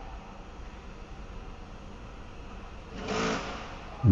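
Faint steady low rumble, consistent with the Mk4 Ford Focus's 1.5 diesel engine idling while its stop-start system stays inhibited. A brief louder rush comes about three seconds in.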